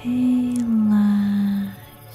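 Soft new-age background music with a loud low tone over it that slides slightly down in pitch and holds for about a second and a half before fading.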